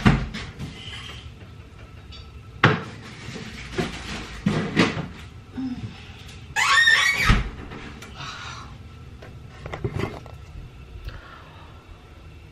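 A Smeg fridge being opened and a wine bottle put inside to chill: scattered knocks and clinks, a louder scraping squeal with a thud a little past halfway, and a few lighter knocks after.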